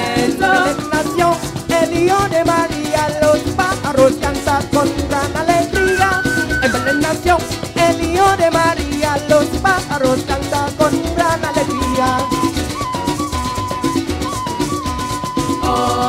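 Live parang music: a band with cuatro, maracas and flute playing a lively instrumental passage in a quick Latin dance rhythm, with a busy melodic lead line over the strumming and shaking.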